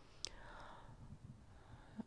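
Near silence in a pause of speech: a small sharp click about a quarter second in, then a faint breath.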